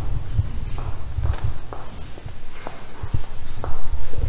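Footsteps on a tiled church floor, irregular knocks a few times a second, over a low rumble from the handheld camera being moved.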